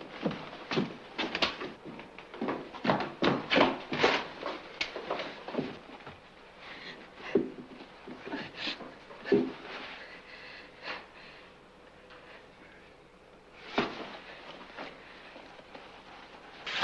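Short, irregular sounds of people moving close by in a small room: rustling and scuffing, with hard breathing.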